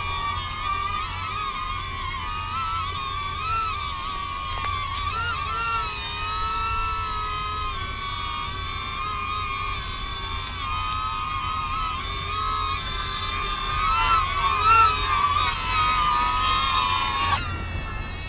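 DJI Neo drone's propellers whining as it hovers close overhead, a cluster of high tones wavering in pitch as it is brought in to land. The whine cuts off abruptly near the end.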